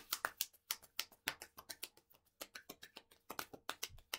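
A deck of affirmation cards being shuffled by hand: a quick run of light card clicks and slaps, about six a second, with a brief pause about halfway through.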